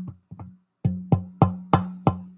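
A Decca record being tapped, about three taps a second, each tap followed by a short ringing tone. It is a tap test for styrene pressing: the owner hears styrene's metallic ring, though he calls it hard to say.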